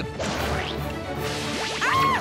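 A cartoon whoosh sound effect over a music bed. Near the end comes a short cartoon yelp that rises and falls in pitch.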